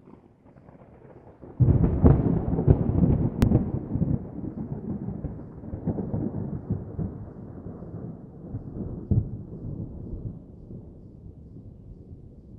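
Thunder: a faint low rumble, then a sudden loud clap about a second and a half in, followed by a long, uneven rolling rumble that slowly fades away.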